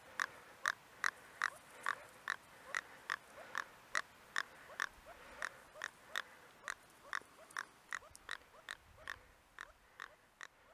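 Jack Russell terrier panting steadily and quickly, short sharp breaths at about two and a half a second.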